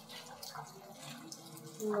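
Faint, steady background ambience with no distinct event, then a girl's voice says a short "No" near the end.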